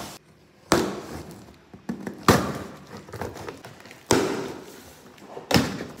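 A large cardboard box being handled and opened: four sharp thumps about one and a half to two seconds apart, each dying away quickly, with quieter rustling in between.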